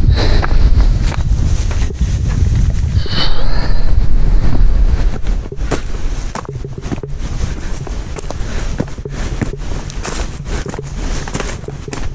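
Wind buffeting the camera microphone, loud for the first five seconds and then easing, with footsteps and scuffs on a dry dirt trail.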